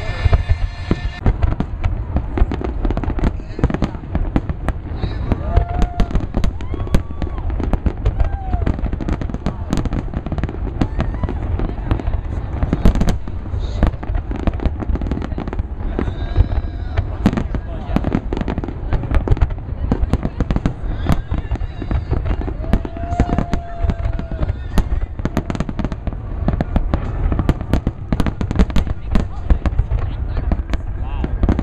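Large aerial fireworks display: many shells bursting in rapid, overlapping succession, a continuous barrage of booms and crackles with no pauses. Crowd voices are heard underneath.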